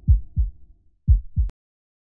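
Outro logo sting made of deep bass thumps in pairs, like a heartbeat: two double beats, then a sharp click about one and a half seconds in as it cuts off.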